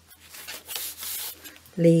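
Paper pages of a handmade junk journal rustling and rubbing as a page is turned by hand, in a couple of soft swishes.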